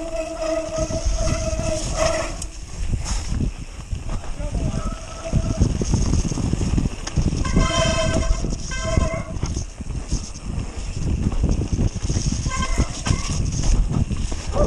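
Mountain bike riding fast down a dirt forest trail, heard from a helmet camera: wind rushing over the microphone with a constant rumble and rattle from the tyres and bike. Short steady whines from the bike break in several times, the longest lasting about two seconds at the start.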